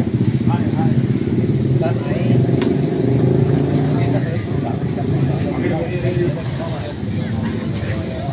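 People talking among themselves over a continuous low mechanical rumble.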